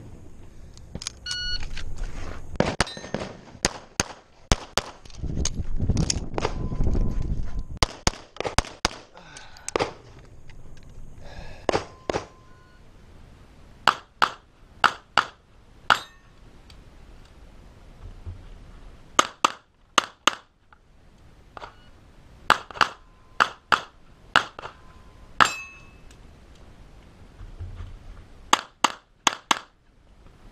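Semi-automatic pistol fired in quick pairs and short strings at close targets, several strings in turn with pauses between them. A stretch of low rumbling noise comes between shots about five to eight seconds in.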